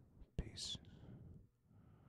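A faint whispered voice: a click about half a second in, then a short, sharp hiss and soft breathy sounds that fade out.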